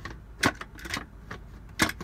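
Lid of a 3-quart Instant Pot pressure cooker clicking and knocking against the stainless pot as it is fitted and twisted into place. Several sharp clicks, the loudest about half a second in and another near the end.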